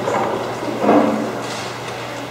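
Brief indistinct voices in a large meeting room, loudest about a second in, over a steady low hum and room noise.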